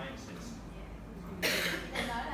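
A single person's cough, short and loud, about one and a half seconds in, over faint voices and a steady low room hum.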